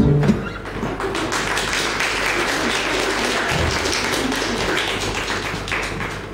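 An acoustic guitar song ends with a last strummed chord and sung note just after the start. Then steady applause, many hands clapping, follows.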